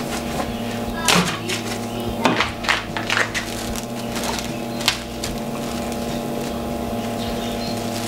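Plastic cling film crackling and rustling as it is pulled across and pressed onto the wort surface and sides of a stainless brewing kettle, with several sharp crackles, the loudest about a second in, again around two to three seconds and near five seconds. A steady hum with a pulsing low note runs underneath.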